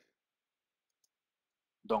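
Near silence, with a man's voice starting to speak near the end.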